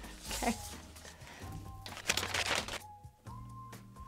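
Soft background music with held notes, and a brief rustle of paper about two seconds in as a taped kraft-paper package is handled.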